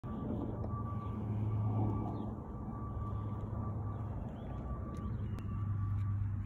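A steady low mechanical hum with a faint, steady high whine above it, over a background haze of noise.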